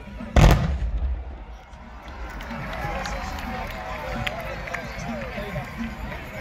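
One loud blast of black-powder muskets fired together in a tbourida (fantasia) volley, fading over about a second. Voices follow a couple of seconds later.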